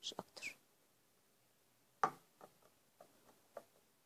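Small plastic bottles being handled: brief squeaky sounds in the first half-second, then a sharp click about two seconds in, the loudest sound, followed by a few lighter clicks and taps. The bottles are the clear plastic spray bottle and the glycerin dropper bottle.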